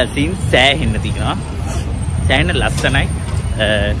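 Steady rumble of passing road traffic on a city street, under short bursts of a man's voice talking.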